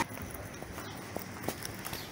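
Faint footsteps on a cobbled street over low outdoor background noise, with a couple of soft taps a little past the middle.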